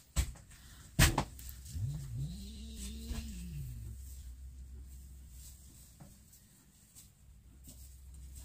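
Two sharp knocks, then a domestic cat's single long meow, about two seconds long, rising and then falling in pitch.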